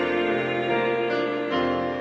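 Electronic keyboard playing held chords as accompaniment to a choir's song, with the chord changing about one and a half seconds in.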